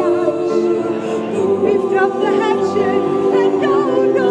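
A choir singing a cappella, holding sustained chords with several voice parts moving above them.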